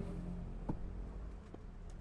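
A quiet, low background hum with two faint clicks, one a little before a second in and one about a second later.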